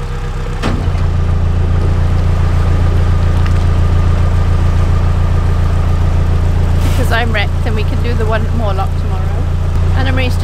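Narrowboat's diesel engine running steadily, picking up a little about a second in.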